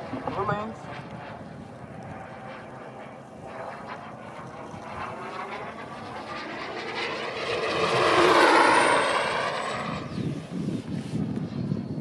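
Electric ducted-fan speed model with a Wemotec impeller making a fast pass: a rushing fan noise that swells to its loudest about eight to nine seconds in and then fades, with a high whine that falls in pitch as it goes by.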